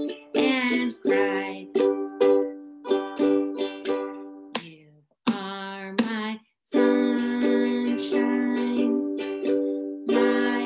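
Ukulele strummed in a rhythmic mix of down and up strokes, with the chords ringing between strokes and changing as it goes. The playing breaks off briefly about five seconds and again about six and a half seconds in.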